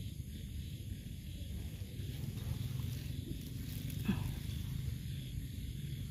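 Faint outdoor night ambience: a steady low rumble under a soft high hiss, with a light click about four seconds in.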